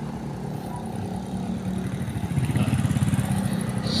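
Small motorcycle engines running on the road, one approaching and growing louder through the second half.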